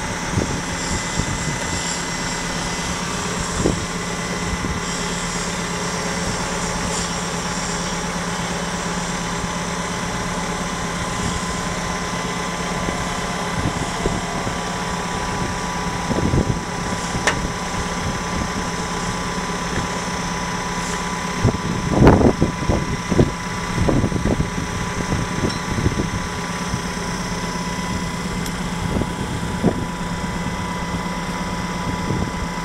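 Heavy machinery running with a steady hum, while a post-tensioning jack works on a concrete beam. A few short knocks come about halfway through, and a louder run of clunks about three-quarters of the way in.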